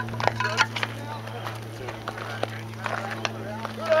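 Several people talking and calling out, with a few short sharp clicks and a steady low hum underneath; a loud shout of "Al" near the end.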